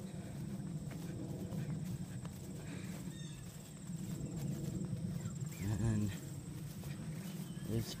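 Footsteps through grass under a steady low rumble, and about six seconds in a single short, warbling call from a turkey.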